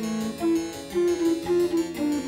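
Music: a harpsichord playing a melody of short, separate notes.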